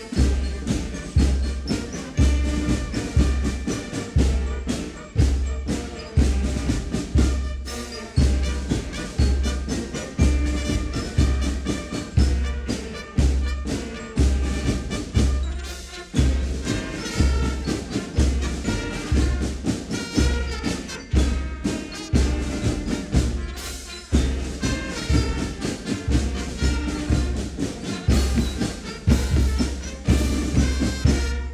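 Brass band playing a march, brass over a steady bass drum beat.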